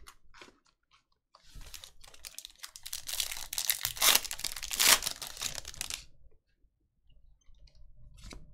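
Foil wrapper of a Bowman's Best baseball card pack crinkling and tearing as it is ripped open by hand. A run of crackling starts about a second and a half in, is loudest around four to five seconds in, and stops about six seconds in.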